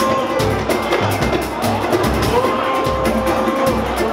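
Live pagode band playing: hand percussion beating densely under two long held notes, each lasting about a second and a half.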